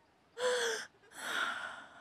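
A young woman's voice taking two audible, dramatic breaths: first a short gasp with a little voice in it, then a longer breathy one.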